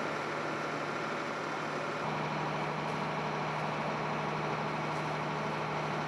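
Fire truck engine running steadily: a low, even hum under a wash of noise, shifting slightly about two seconds in.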